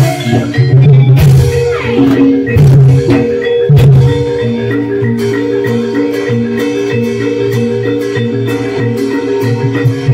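Javanese gamelan music for a jaranan dance. Heavy drumming and sharp clashes for the first four seconds give way to a steady, repeating pattern of metallophone notes over lighter drumming.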